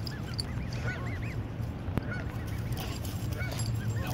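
Newly hatched Canada goose goslings peeping: a quick run of short, high, arched chirps about a second in, then scattered single peeps, over a steady low hum, with one sharp click about halfway.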